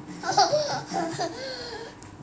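A young child laughing: a high-pitched, breathy run of short laughs, loudest about half a second in.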